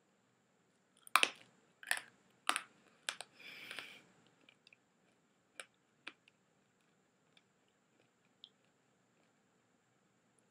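Hard Polo peppermint mints being crunched between the teeth: four sharp crunches about half a second apart starting about a second in, then fewer and fainter ones.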